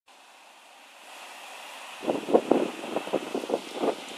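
Wind buffeting the microphone in uneven gusts, starting about two seconds in, over a faint steady hiss.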